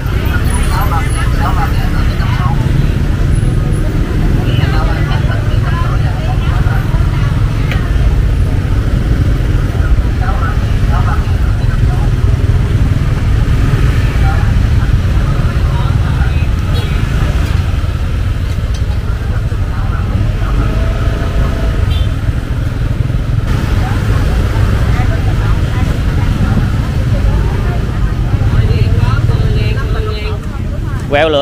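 Busy street-market ambience: a steady low rumble of motorbike traffic with scattered, overlapping voices of vendors and shoppers.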